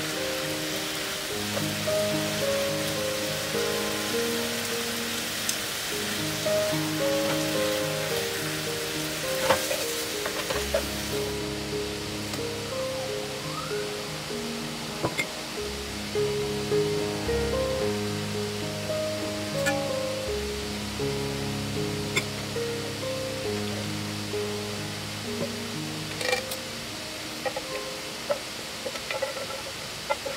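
Background music throughout. Under it, beef and onions sizzle in a frying pan as they are stir-fried, until the sizzling stops abruptly about eleven seconds in. A few light clicks follow.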